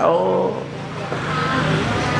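A man's amplified voice trails off about half a second in, leaving a steady hum and hiss of a motor vehicle running or going by.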